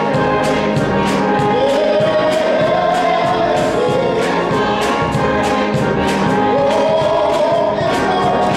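A gospel choir and male soloist singing with organ accompaniment, with hands clapping on the beat about twice a second. The sung line rises and holds twice, a couple of seconds in and again near the end.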